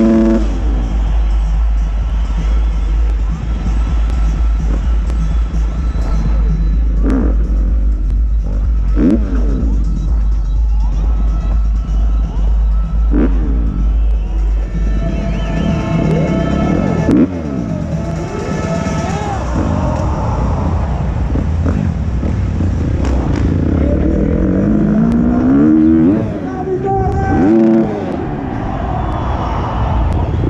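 Motocross bike engine revving up and down in several rising and falling sweeps, over loud music from the arena sound system.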